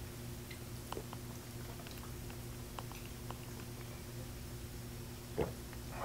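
Faint mouth sounds of people tasting whiskey with chocolate: small scattered clicks and smacks over a steady low electrical hum, with one louder smack a little before the end.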